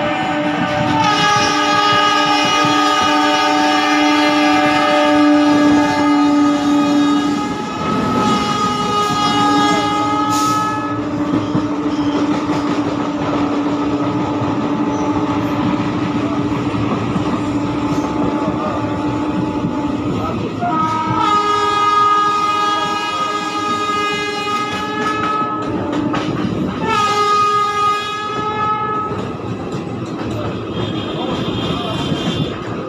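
Moving train heard from inside a coach with an open barred window: running noise and wheels clattering over the rail joints. Long train horn blasts sound over it, one lasting about ten seconds near the start, then two more in the last third, the final one shorter.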